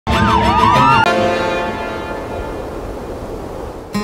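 Title sting: several sirens wail over one another, gliding up and down in pitch, for about a second. They cut off abruptly into a sustained ringing chord that slowly fades away.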